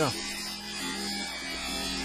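Bench polisher running with a 3M radial bristle brush, a small cut-metal piece held against the spinning brush: a steady motor hum.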